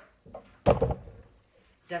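A clothes iron set down upright on its heel on a wooden tabletop: one solid thunk about two-thirds of a second in, after a lighter tap.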